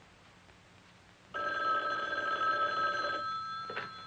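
Office telephone ringing once: a single ring starts abruptly about a second in, lasts about two seconds and dies away.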